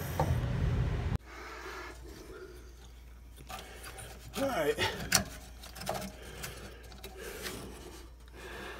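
Black plastic faucet mounting nut being unscrewed from a rusty threaded faucet post, first with pliers and then by hand: irregular scraping of plastic on rusted threads with scattered small clicks, as the old kitchen faucet is taken out.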